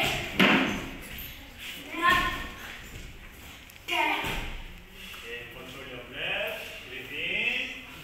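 Bare feet landing with heavy thuds on a hollow wooden stage as two taekwondo students do tuck jumps, the impacts ringing in a large hall. Voices are heard between the landings and near the end.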